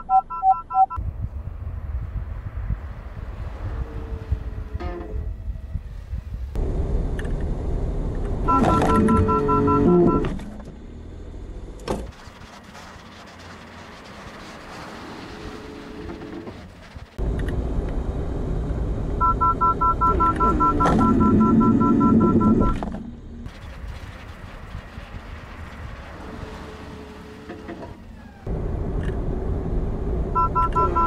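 A Honda N-BOX's collision-warning alarm sounds three times as rapid two-tone beeps over the car's road and tyre noise. After each burst of beeps the noise falls away as the car brakes automatically to a stop.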